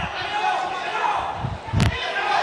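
Boxing arena ambience with background crowd voices, broken by a few dull thuds of gloved punches landing in an exchange; the sharpest thud comes near the end.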